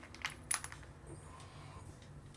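A few quick, sharp clicks of a small hard object tapping, bunched together from about a quarter to two-thirds of a second in.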